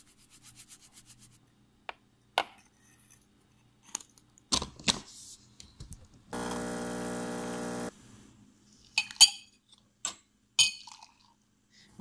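Ground coffee rattles in quick light ticks into a metal espresso filter basket, then the basket clicks and clunks against the machine. About six seconds in, the espresso machine's pump buzzes steadily for a second and a half, and a few sharp clinks of metal and glass follow.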